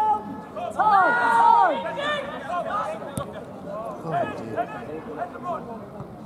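Men's voices shouting and calling out during a football match, loudest about a second in, with a single sharp knock about three seconds in.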